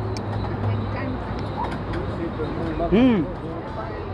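Busy street ambience: a steady low hum with traffic and background voices. A short hummed 'mm' comes about three seconds in.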